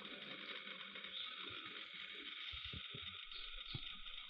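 Faint steady hiss of room tone, with a few soft clicks and knocks in the second half from hands working a film camera on a tripod.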